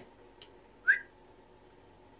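A single short whistle-like chirp rising in pitch, about a second in, with a faint click just before it.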